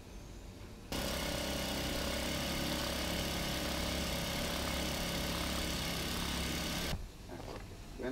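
Factory machinery running steadily, loud and even with a mix of steady tones. It starts suddenly about a second in and cuts off suddenly near the end, over a low hum.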